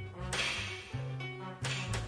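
Live jazz quartet playing: a double bass line of stepping low notes with three sharp drum and cymbal hits, one about a third of a second in and two close together near the end.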